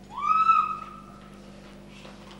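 A person's high-pitched cry that rises quickly at the start, holds for about a second and fades away.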